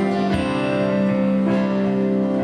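Live worship band playing an instrumental passage of a hymn: guitar strumming and holding sustained chords, with no voices singing.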